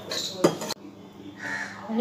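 Metal spatula scraping cooked banana flower around an aluminium wok, with a sharp knock against the pan about half a second in. A crow caws about a second and a half in.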